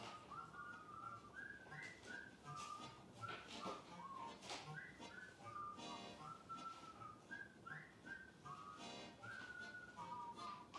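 A whistled tune over light backing music from the cartoon's soundtrack, the melody stepping from note to note, heard through a TV speaker.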